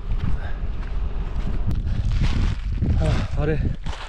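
Footsteps crunching on loose volcanic gravel and scree, with wind rumbling on the microphone. A man starts speaking near the end.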